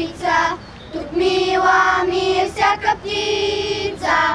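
A group of children singing a Bulgarian patriotic song together, holding long notes with short breaths between phrases.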